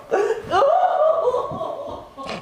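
Someone laughing: a quick gasp, then one long high-pitched laugh that slowly falls in pitch and fades near the end.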